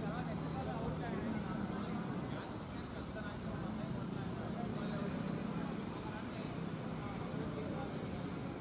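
Faint, indistinct voices of cricket players talking in a team huddle, over a steady low hum.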